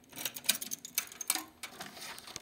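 A quick, irregular run of light clicks and rattles, as of small metal parts being handled. The loudest clicks come about half a second in and again just past one second.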